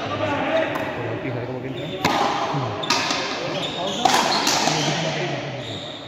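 Frontenis rally: the rubber ball cracking sharply off racquet strings and the frontón wall, three hits about a second apart, each echoing in the covered court, over low voices.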